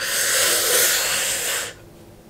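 A woman's long, hissing breath out through her teeth in exasperation. It lasts under two seconds and stops abruptly.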